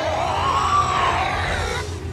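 Cartoon sound effect of a swirling green whirlwind: a warbling, siren-like sweep that rises in pitch and then falls away, fading out near the end, over a steady low hum.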